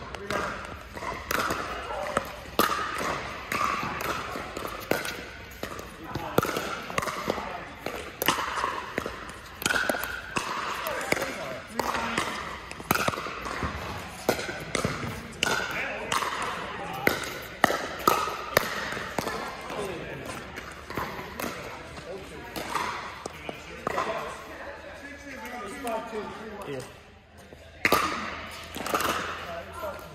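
Pickleball paddles striking a plastic ball in a doubles rally, a sharp pop every second or so at an irregular pace, with the ball bouncing on the court and the hits echoing in a large indoor hall.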